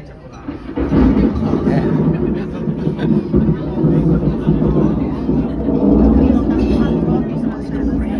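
Recorded thunder rumble played over a restaurant's sound system as a simulated tropical storm. It starts suddenly about a second in and keeps rolling, deep and loud, to the end.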